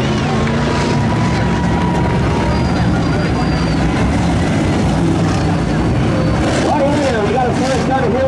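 Dirt late model race car engines running steadily at low speed, a continuous loud rumble.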